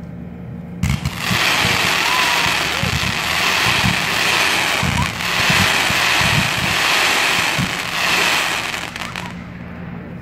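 Consumer firework cake ('Fast Trigger') firing a fast volley that runs together into one loud, continuous rush with irregular low thumps, starting about a second in and cutting off shortly before the end.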